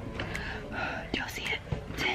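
A young woman's breathy whispering under her breath, with a few faint clicks.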